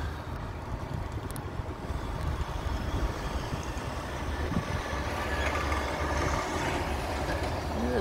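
Low, steady rumble of road traffic, swelling over the last few seconds as a vehicle passes.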